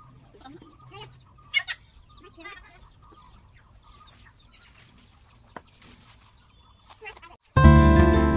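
Quiet outdoor background with a few short animal calls, the loudest about one and a half seconds in. Near the end, after a brief gap, plucked-string background music starts suddenly and loudly.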